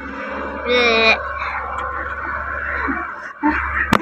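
A young child's short high-pitched vocal sound, rising in pitch, about a second in, followed by indistinct background voices over a steady low hum.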